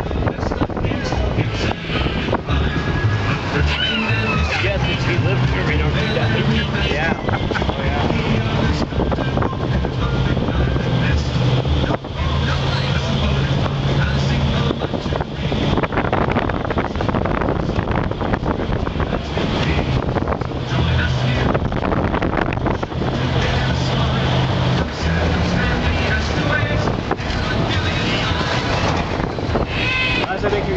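Amphibious duck tour vehicle driving on the road with its sides open: engine and road noise with wind on the microphone, under music with a bass line of changing low notes playing over the vehicle's loudspeakers, and passengers' voices.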